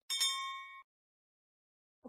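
A single bright ding sound effect, the notification-bell chime of an animated subscribe button. It rings with several clear pitches, fades, and is cut off abruptly a little under a second in.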